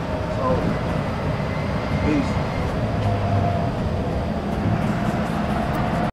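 Bus running, a steady low rumble heard from inside the cabin, with faint voices in the background.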